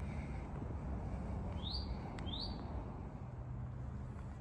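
A bird gives two short rising chirps about two seconds in, over a steady low background rumble.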